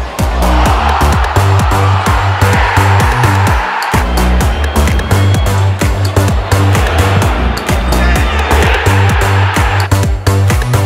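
Electronic dance music with a steady beat and heavy bass. The bass drops out briefly about four seconds in, and a noisy swell rises and falls above the beat.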